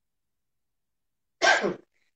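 Silence, then near the end one short burst from a girl's voice, under half a second, falling steeply in pitch.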